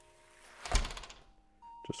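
A single short thud about three-quarters of a second in, set against near quiet and faint held music tones. A small click comes just before the end.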